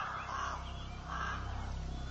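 Crows cawing: a few harsh, repeated caws over a low, steady rumble.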